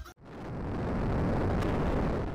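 Intro sound effect: a rumbling rush of noise that swells in just after the music cuts off, holds steady, then begins to fade near the end.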